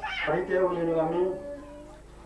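A person's voice drawn out in long sung notes, the pitch rising at the start and then held steady for about a second before trailing off.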